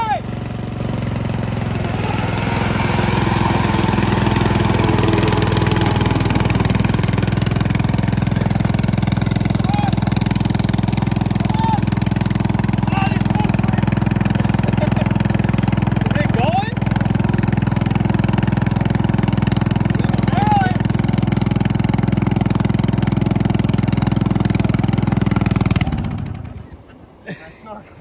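Small engine of a snorkeled riding lawn mower running steadily under load as the mower drives through a river, building up over the first few seconds. About 26 seconds in it cuts out abruptly: the engine stalls in the water.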